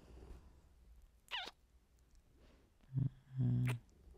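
A man's soft, low, closed-mouth 'mm-hmm' hum near the end, in two short parts, ending in a light lip smack. About a second and a half in, a brief, squeaky, wet kissing sound close to the microphone.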